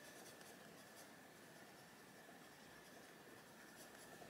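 Faint, steady sound of an Arteza Expert coloured pencil shading on paper, barely above room tone.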